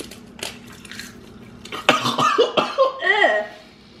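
A person coughing and making a disgusted gagging vocal noise in reaction to a bite of wasabi-flavoured roasted seaweed snack, starting sharply about two seconds in and lasting about a second and a half.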